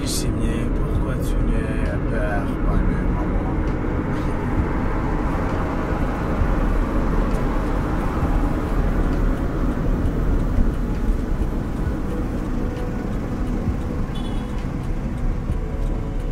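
Steady road and engine noise heard inside the cabin of a moving car, an even low rumble that holds at one level.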